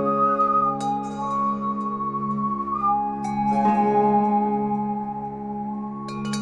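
Calm background music: a slow melody of held notes over a steady low drone.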